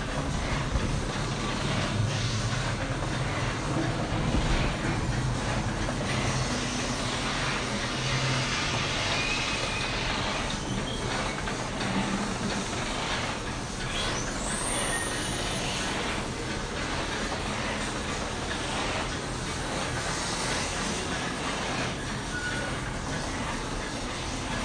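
Horror-themed ambient sound effects from the store's speakers: a steady dark rumbling and hissing soundscape, with a rising whistle-like tone sweeping upward about fourteen seconds in.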